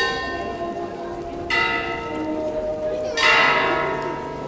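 Church bell tolling for a funeral: three strokes about a second and a half apart, each left to ring on and fade.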